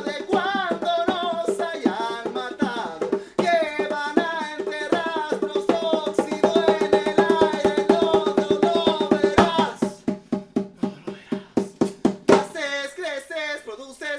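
A man singing into a microphone while beating a regular rhythm on a hand drum. A little under ten seconds in, the voice stops and only quick drum strokes carry on for about two seconds before the singing comes back.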